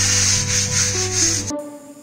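Green scouring pad scrubbing grimy ceramic wall tiles coated with bathroom cleaner: a steady, scratchy rubbing over background music. Both cut off abruptly about three-quarters of the way through.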